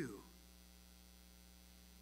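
Near silence with a steady low electrical hum, after a man's last word fades in the first moment.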